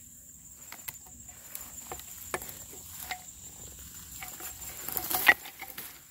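Dry grass and twigs rustling and light scrapes and clicks as a gloved hand handles a rusty metal canister with a coil spring attached, with a louder metallic clank about five seconds in as it is moved.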